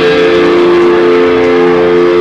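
Distorted electric guitars held on long sustained notes through stage amplifiers, ringing steadily and loudly.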